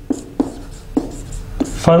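Marker pen writing on a whiteboard: several short scratchy strokes as words are written out.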